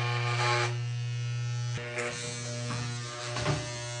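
An old corded electric hair clipper with a plastic guard buzzing steadily. It rasps brighter in the first moment as it cuts into hair behind the ear, then runs on with small changes as it is moved over the head.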